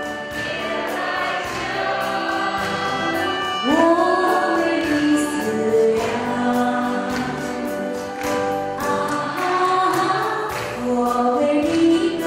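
A woman singing a classic old Shanghai popular song into a microphone, holding long notes with vibrato and sliding up into phrases, over a live band accompaniment. Light cymbal ticks keep a steady beat.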